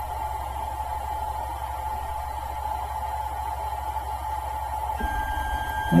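Steady hum of a Tronxy 3D printer heating, with a faint steady tone above it. About five seconds in, the low end turns rougher and faint new tones join as the print head starts moving.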